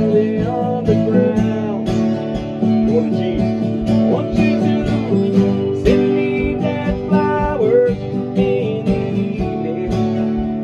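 Acoustic guitar strummed in a steady rhythm, playing a song.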